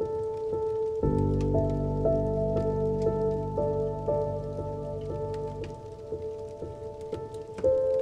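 Slow, melancholic solo piano with held notes and a low chord entering about a second in, over steady rain with scattered drops.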